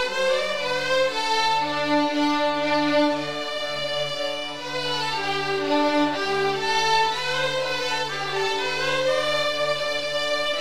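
Children's string orchestra of violins and cellos playing a piece together, with held bowed notes moving from pitch to pitch over a steady cello line.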